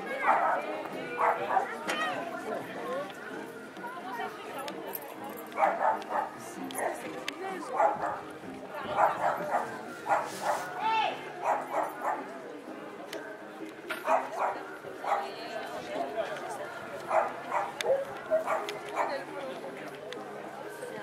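A dog barking in about five bouts of several quick barks each, with pauses in between.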